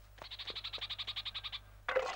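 Night-time forest ambience: a faint, rapid, even trill of a calling creature, about fifteen pulses a second, which stops shortly before the end.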